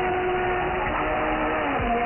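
Music from a shortwave pirate station received in upper sideband: held notes that slide in pitch now and then, over a steady bed of static, cut off above about 3 kHz.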